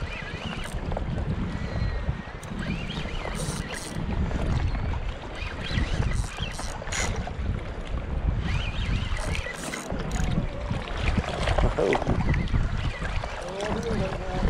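Strong wind buffeting the microphone over choppy water, a steady rumble that rises and falls in gusts, with a few scattered faint clicks.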